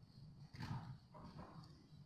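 Quiet room tone of a large presentation hall with a low steady rumble, broken by two faint, brief sounds, about half a second and a second and a quarter in.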